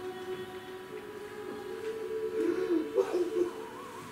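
A steady drone of several held tones, as in atmospheric stage music or a soundscape, with a wavering, voice-like hum rising over it from about two to three and a half seconds in.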